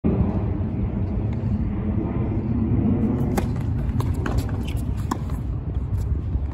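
Tennis ball struck by rackets and bouncing on a hard court: a few sharp pops from about halfway on, over a steady low rumble.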